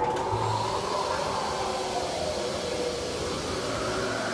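Interactive wand-spell snow effect going off: a steady rushing hiss that starts suddenly, with faint whistling tones slowly rising in pitch.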